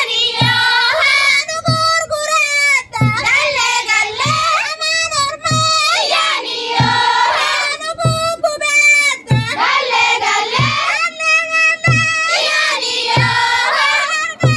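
A group of girls singing together, with a low thump about every 0.8 seconds keeping the beat.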